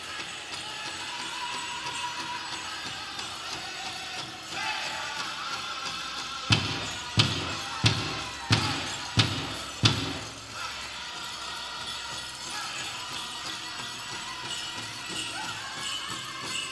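Six evenly spaced beats on a large powwow drum, about three every two seconds, each with a low ringing decay, over a steady background hubbub.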